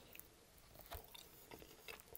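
Faint mouth sounds of biting and chewing a saucy chicken wing, with a few soft clicks scattered through.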